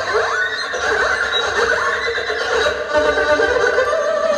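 Two erhus bowed together in a duet, playing rapid sliding glides that swoop up and down in pitch, a whinny-like effect in the manner of a horse's neigh.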